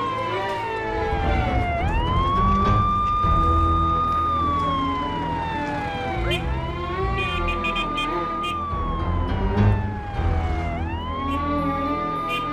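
Police siren wailing: each cycle rises quickly, holds a high note for a couple of seconds, then slides slowly down, repeating about every four and a half seconds.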